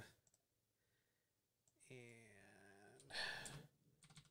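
Mostly near silence, with a few faint computer keyboard clicks just after the start.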